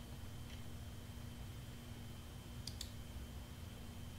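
Computer mouse clicks: a faint click about half a second in, then two quick sharp clicks close together near three seconds in, over a steady low electrical hum.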